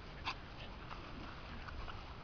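A small dog sniffing in grass: a few short, faint sniffs, the clearest just after the start.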